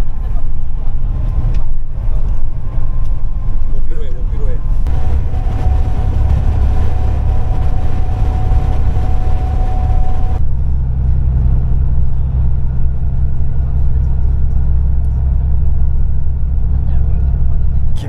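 Coach bus engine and road noise heard inside the passenger cabin: a loud, steady low drone that changes character about five seconds in and again about ten seconds in, with a thin steady whine over the middle stretch.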